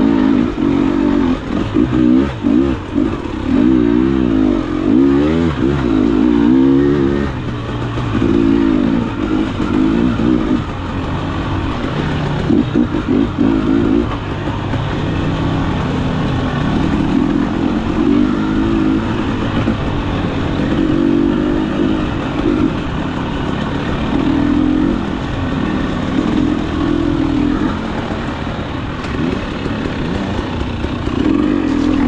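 KTM 300 XC-W's single-cylinder two-stroke engine under way on a rough trail, the throttle constantly opened and closed so the pitch keeps rising and falling.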